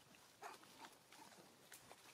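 Faint outdoor ambience: scattered light rustling and clicks in leaf litter and undergrowth, with a few short, faint calls in the first half.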